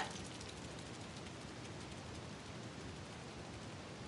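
Steady faint hiss of room tone and microphone noise, with no distinct sounds.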